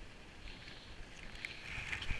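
Skis sliding over groomed snow: a steady swishing hiss that grows louder toward the end, with a few faint clicks.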